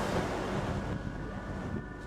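Wind buffeting the microphone: a steady low rumble that eases off a little toward the end.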